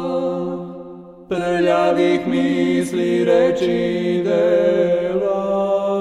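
Unaccompanied Orthodox church chant: voices hold a steady drone note that fades away about a second in. After a short break the singing comes back, a melody moving above the held drone.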